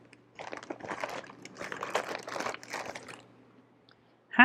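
Someone rummaging through things, searching for a misplaced item: rustling, crinkling and quick small clicks and knocks, from about half a second in until about three seconds in.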